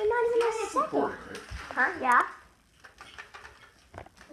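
A child's voice making long wordless sounds: a held note, then a fast wavering warble about two seconds in. After that there are a few small knocks and handling noises.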